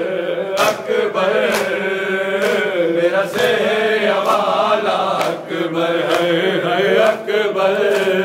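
Men chanting a mournful nauha, with a sharp, even slap of hands on bare chests (matam) a little under once a second keeping the beat.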